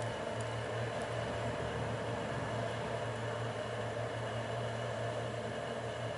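Steady motor hum and whir of an electric blower supplying air to a small forge, running evenly.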